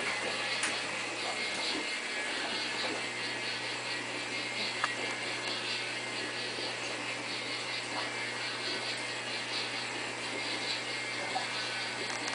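American DJ Multi Star disco light running, its motor turning the three coloured balls: a steady mechanical whirring with a fast, regular faint clicking over a low hum.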